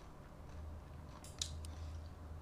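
Metal fork and spoon clicking and scraping against a ceramic plate while lifting noodles, with one sharp click about one and a half seconds in and a few lighter ticks after it.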